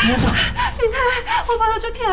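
Dialogue in Mandarin/Taiwanese: a man asks a woman what is wrong, and she answers in pain that her stomach hurts.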